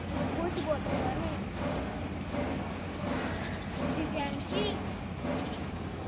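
Indistinct children's voices over a steady outdoor background hiss, with no clear words.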